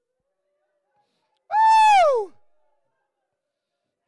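A person's single high, drawn-out vocal cry, held on one pitch for about half a second and then sliding down, coming a second and a half in out of near silence.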